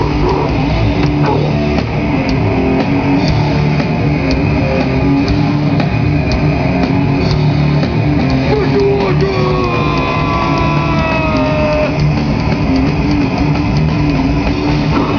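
Loud live grindcore band playing: distorted electric guitar, bass and drum kit in a dense, unbroken wall of sound. A drawn-out high note slowly falls in pitch about two-thirds of the way through.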